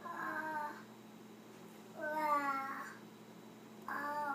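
A baby making three short wordless vocal sounds, each sliding a little down in pitch; the middle one, about two seconds in, is the longest and loudest, and the last comes near the end.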